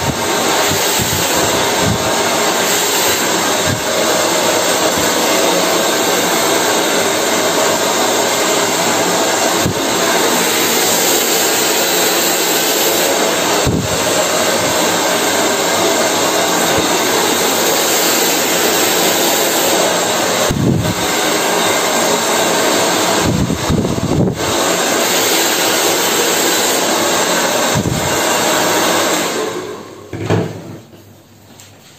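Handheld hair dryer blowing steadily at close range, a loud even rush of air, with a few brief dips in level as it is moved about the hair; it cuts off right at the end.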